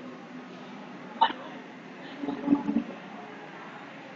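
Steady background noise with a single sharp click about a second in. A brief, indistinct vocal sound follows about two and a half seconds in.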